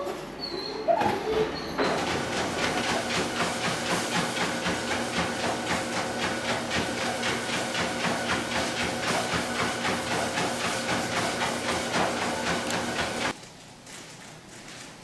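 Treadmill running with a steady motor whine and a fast, regular clicking from the moving belt as a small dog walks on it. It cuts off suddenly shortly before the end.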